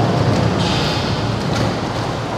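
A load of salmon sliding and tumbling down a stainless-steel sorting table after being dumped from the hatchery's fish elevator, a steady, loud rumbling noise.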